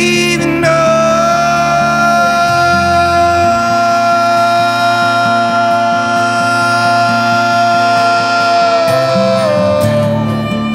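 Live acoustic trio of acoustic guitar, cello and violin in an instrumental passage. The guitar picks a repeating pattern while one long high note is held for most of the passage and slides down near the end. The cello's low notes drop out a few seconds in.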